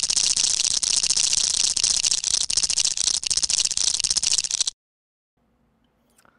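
Edited-in sound effect for an animated logo intro: a dense, rapid rattle of many tiny clicks, bright and loud, that cuts off suddenly near the end.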